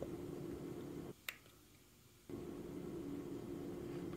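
A single sharp click of a button being pressed on a Philips Hue Dimmer Switch V2, switching the lights off. Under it is a faint steady hum, which cuts out for about a second around the click.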